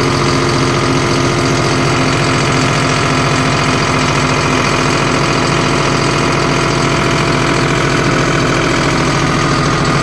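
John Deere CRDI tractor's diesel engine running steadily with the throttle set to full. A fault holds the revs down to about 1500 rpm; it was traced to a failing sensor that reports diesel temperature and pressure.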